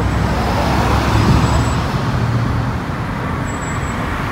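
Road traffic on a busy multi-lane street: a steady rumble of passing cars, swelling about a second in and easing slightly after about three seconds.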